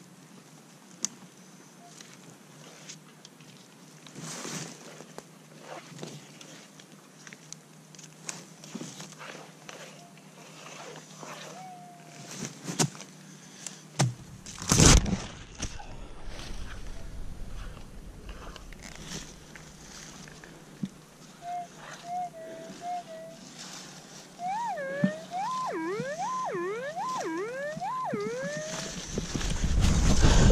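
Digging and scraping in forest soil, with a heavier knock about halfway through. In the last third, a Minelab GPX 4500 pulse-induction metal detector gives short tones and then a rising-and-falling target tone, several times over, as the coil is swept back and forth over the dig.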